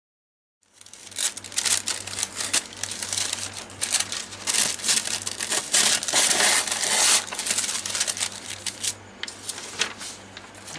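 Thin waxy deli paper and copy paper crinkling and rustling as they are handled and the deli paper is peeled away from the copy paper. The sound starts abruptly about a second in and eases off near the end, over a low steady hum.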